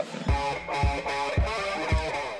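Electric guitar riff played through a distortion pedal with overdrive, over a steady low pulse about twice a second.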